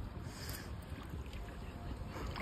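Wind buffeting the phone's microphone as a low, uneven rumble, with a brief rustle about half a second in.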